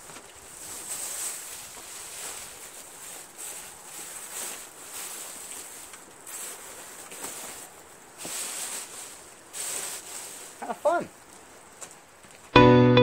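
Plastic bag and crumpled packing paper rustling and crinkling in irregular bursts as they are pushed and stuffed into a cardboard box around a heavy part. A short vocal sound comes near the end.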